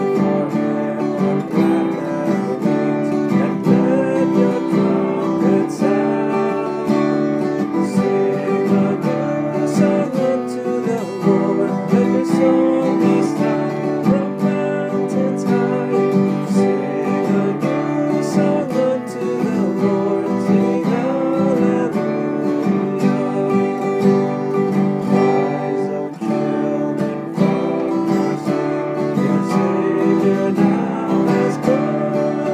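Acoustic guitar music, strummed in a steady rhythm.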